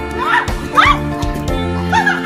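Background music, over which a goose gives short, arching honks, twice in quick succession; the second, about a second in, is the loudest.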